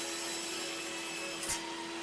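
Table saw running steadily, an even whirr with a constant hum, as a board is pushed through the blade. A single short click about one and a half seconds in.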